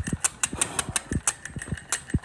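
Tabletop model steam engine running on its alcohol-fired boiler: an even run of sharp clicks and puffs, about six a second, as the flywheel-driven valve lets steam in and out of the little piston.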